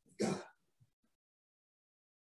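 A man clearing his throat once, briefly, near the start.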